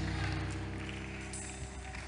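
A soft, sustained chord of background music, held steady and slowly fading.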